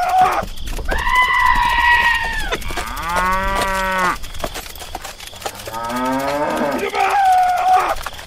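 Cattle mooing, a run of about five calls: one deep, long moo in the middle and another that rises in pitch before a last call near the end.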